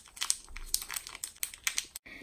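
A small plastic blind bag crinkling as it is squeezed and tugged at by hand, a quick, irregular run of sharp crackles.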